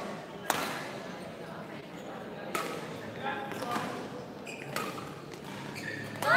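Badminton rackets striking a shuttlecock in a rally: three sharp hits about two seconds apart, with faint voices in the background.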